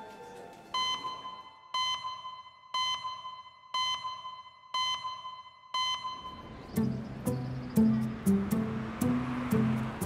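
Six short electronic beeps on one high tone, about one a second, marking an on-screen clock time stamp. Music with plucked guitar notes comes in at about seven seconds.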